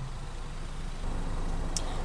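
Steady low hum of an idling car engine, with a short click near the end.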